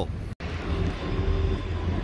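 Steady low rumble of city street ambience with distant traffic, heard after a brief total cut-out of the audio near the start.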